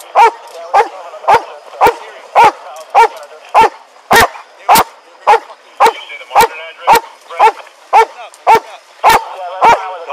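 Police K9 dog barking steadily and rhythmically, about two barks a second: a guard bark holding a found suspect at bay on the "watch him" command.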